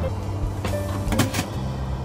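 Background music with steady low notes, over water swishing and sloshing as sand is scrubbed by hand in a plastic bucket of water, with a couple of louder swishes a little past a second in.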